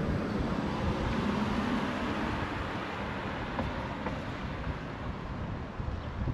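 Steady outdoor street noise with a vehicle going by and slowly fading, and wind rumbling on the microphone.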